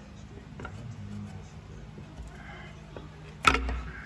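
A single sharp knock about three and a half seconds in, over a steady low hum.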